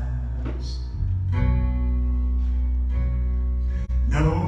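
Live band playing without vocals: acoustic guitar strummed over grand piano and electric bass, with sustained chords and a change of chord about a second and a half in.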